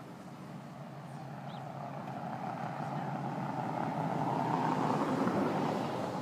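Vehicle noise, a steady whir that swells for about five seconds and then fades.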